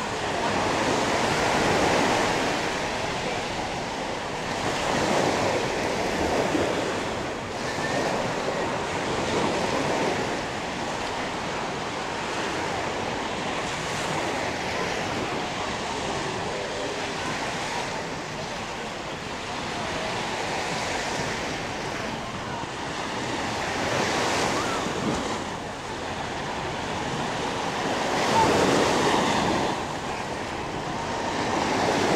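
Small surf breaking and washing up on a sandy beach, the wash swelling and fading every few seconds.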